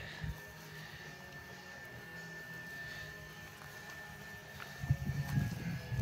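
Swedish fire log (split log burning from a fire in its hollow centre) burning quietly, with a few faint sharp crackles over a thin steady high whine. Low thuds and rumbles come near the end.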